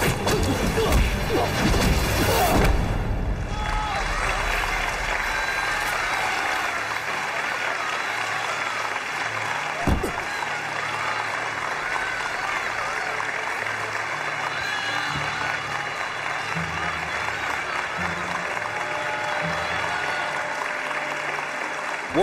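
Fight-scene soundtrack: hit and impact effects over loud music for the first few seconds, then a crowd applauding and cheering over background music. One deep thud about ten seconds in.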